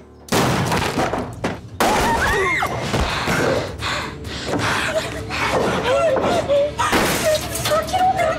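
Repeated loud bangs and crashes that start suddenly a moment in, with women crying and wailing in fright over them.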